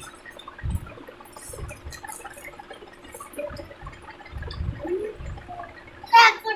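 Hands squishing and mixing watered rice (pakhalo) in steel bowls: scattered small wet clicks and squelches, with a few soft low thumps.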